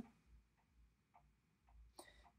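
Near silence: room tone with four or five faint, short ticks spread through the pause.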